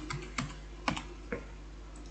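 Keystrokes on a computer keyboard: a handful of short, unevenly spaced key clicks as a password is typed, stopping about a second and a half in.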